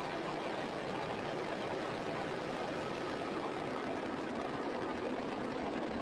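Falcon 9 first stage's nine Merlin 1D engines firing as the rocket climbs away from the pad just after liftoff: a steady, even rushing noise that does not change in level.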